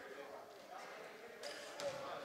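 Quiet gymnasium room tone with faint distant voices, and a couple of faint knocks near the end.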